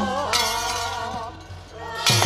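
Javanese gamelan accompanying a fight dance: sustained metallophone and gong tones under a wavering melodic line. A bright metallic crash, typical of the kepyak plates that cue dance movements, rings out at the start. A fresh crash with a low drum stroke comes right at the end.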